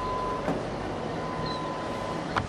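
Steady mechanical noise with no words, and a single light click about half a second in.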